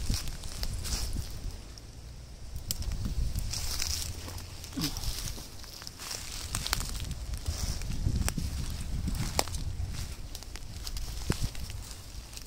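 Footsteps and rustling through dry fallen leaves and twigs on a forest floor, with scattered small cracks and crackles. A steady low rumble runs underneath.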